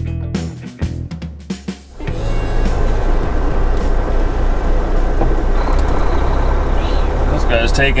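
Background music with a beat that cuts off about two seconds in, giving way to the steady running of a semi truck's diesel engine and road noise heard from inside the cab.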